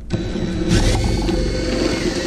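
Power drill spinning a twist bit down through a board's epoxy top coat and plastic insert cap, running steadily; a harsher cutting sound comes in under a second in as the bit grinds lightly into the top of the metal threaded insert.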